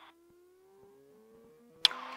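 Flight Design CTLS light-sport aircraft engine being run up, heard faintly, its pitch rising steadily as the throttle is advanced toward 4,000 RPM for the pre-takeoff run-up. A single sharp click near the end.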